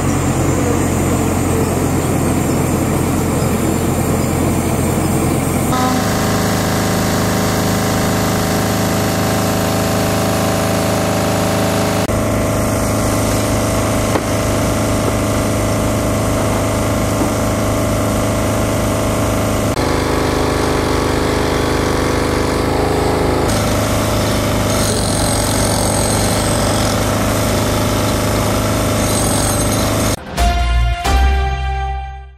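Diesel engine of a telehandler carrying a work platform, running steadily. Its hum changes tone abruptly a few times.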